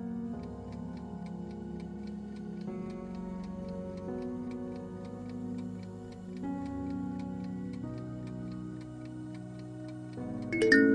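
Countdown timer sound effect: a steady clock-like ticking over soft background music with sustained chords.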